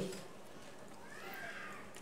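A pause in the speech: faint room hiss, with a faint high call that rises and then falls, starting about a second in and lasting under a second.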